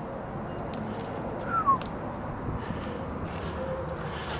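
Steady outdoor background noise with a few light clicks and one short, falling chirp about one and a half seconds in.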